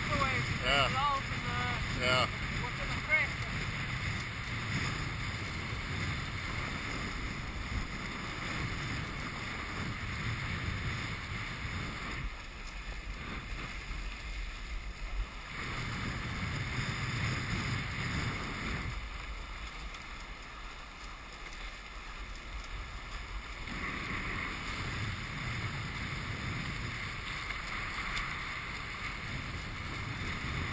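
Wind buffeting the microphone over the water noise of a Hobie sailboat under way. The wind rumble drops away twice for a few seconds and then returns.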